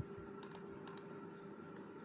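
Three faint clicks in the first second, about half a second apart, over a faint steady hum.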